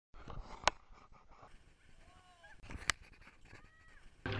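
Mostly quiet, with two sharp clicks about two seconds apart and a few faint short gliding calls.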